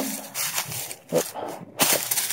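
Footsteps crunching through dry fallen leaves, about three steps at a walking pace.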